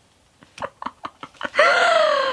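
A woman laughing: a run of short breathy giggles, then a long high-pitched squeal that slowly falls in pitch.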